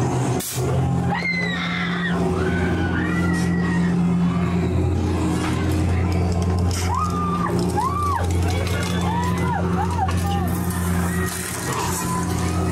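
A haunted-attraction soundscape: a steady low droning soundtrack with high voice cries over it. The cries rise and fall, a couple about a second in and a quick run of shorter ones in the second half.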